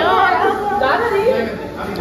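Several people's voices talking and exclaiming over one another, a woman's voice among them, quieter near the end.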